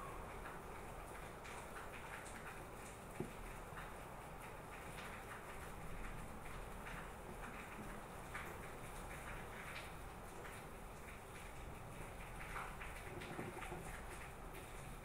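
Quiet workbench handling: small scattered clicks and taps from a circuit board and hand tools being moved, with one sharper click about three seconds in, over a steady low hum.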